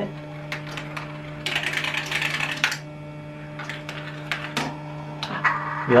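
Plastic marble run at work: the electric marble launcher hums steadily while a marble clicks and clatters along the plastic tracks, with a longer rattle about one and a half to nearly three seconds in.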